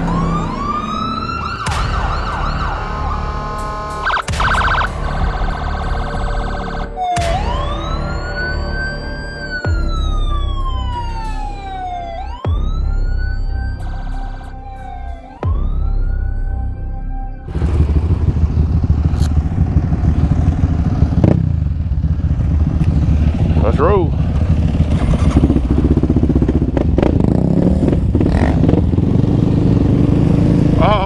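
Electronic music with repeated sweeping, siren-like synth glides that rise and fall. About two-thirds of the way through it gives way to a Yamaha Raptor 700's engine running steadily as the quad is ridden.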